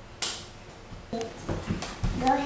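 A single sharp hand slap of a high five about a quarter second in. Then a few soft knocks and low thumps near the end as the child slides off the wooden step onto the floor.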